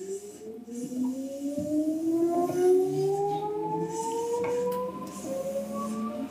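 Seibu 2000 series electric train pulling away from a stop, heard inside the car: the traction motor whine climbs steadily in pitch as it accelerates, over the rumble of the wheels, with a few clacks over rail joints.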